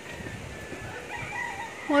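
A rooster crowing faintly, one long drawn-out call, with a voice starting right at the end.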